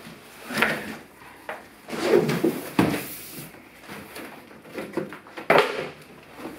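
Cardboard packaging being handled: several short scraping, rustling bursts as a large speaker carton is slid off and moved, with a sharp knock about halfway through.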